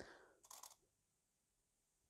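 Near silence: room tone, with one faint, brief handling sound about half a second in.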